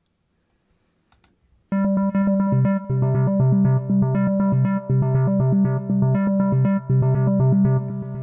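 Omnisphere 2.6 software synthesizer's arpeggiator playing a rapid repeating note sequence in High-Low mode on a held C and G, low and high notes alternating. It starts about a second and a half in, just after a faint click.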